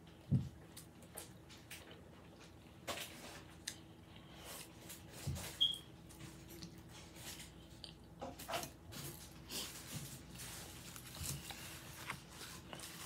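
Close-miked eating sounds of someone chewing a chicken burrito: scattered small mouth clicks and wet chewing, with a soft thump about half a second in and another about five seconds in. A faint steady hum lies underneath.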